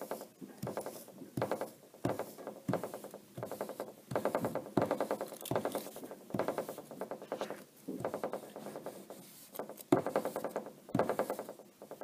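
A paper towel being rubbed hard back and forth over aluminium foil on a table, about one and a half scratchy, crinkly strokes a second, polishing the oxide layer off the foil until it is shiny.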